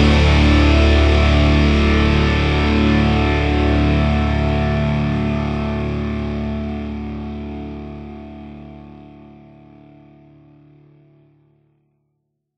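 Final chord of a pop-rock song on distorted electric guitar, held and ringing, fading slowly away until it dies out near the end.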